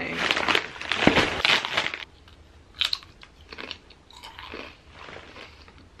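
A crisp snack bag crinkles loudly for about two seconds, then potato chips are crunched and chewed, in quieter scattered crunches.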